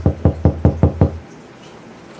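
Rapid knocking on a door: a quick run of about seven knocks, about five a second, that stops about a second in.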